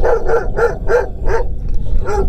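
A dog barking: about five short barks in a quick run, roughly three a second, stopping before the end.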